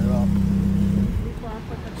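Lamborghini Huracán's V10 engine idling with a steady low hum, then shut off about a second in.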